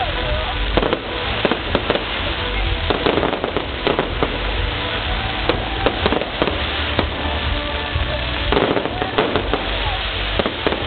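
Fireworks display: a dense, continuous run of sharp pops and bangs from bursting shells and spark fountains.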